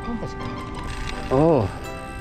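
Spinning reel's drag clicking in a rapid ratchet as a hooked fish pulls line off the spool. A brief voice sounds about a second and a half in.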